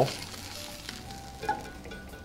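Oil sizzling steadily in a hot nonstick skillet on a gas burner, with a brief tap of a metal spatula about one and a half seconds in.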